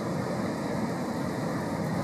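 Steady noise of ocean surf breaking on a beach, with wind on the microphone, and no distinct event standing out.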